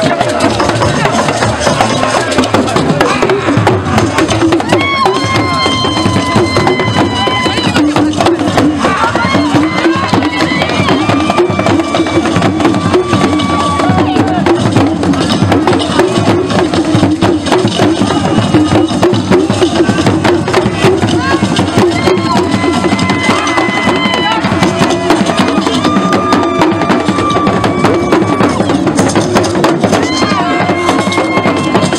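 Live traditional Ghanaian drumming: hand drums and percussion played in a continuous, dense rhythm, with long held high notes running over the drumming.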